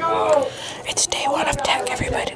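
A person whispering, words not made out, with a couple of sharp clicks about a second in and again half a second later.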